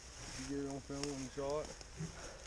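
A man speaking a few indistinct words.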